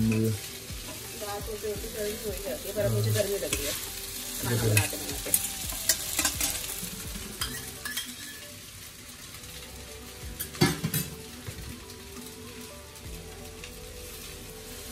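Noodles being stir-fried in a wok: a steady sizzle under the scrape and clack of a metal utensil against the pan. The clatters come thickest around the middle and again about ten and a half seconds in.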